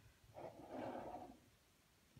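A soft breathy sound from a person, about a second long, with near silence on either side.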